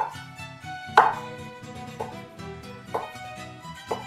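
Chef's knife slicing roasted jalapeño chiles into rings on a wooden cutting board, the blade knocking on the board about once a second. Background violin music plays throughout.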